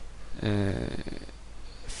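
A man's drawn-out hesitation sound, "uh", about half a second in, held on one even pitch for roughly half a second, over a steady low hum.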